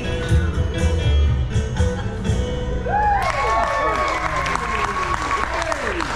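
A live song by a female singer with a bass-heavy backing ends about halfway through, and the audience breaks into clapping and whoops.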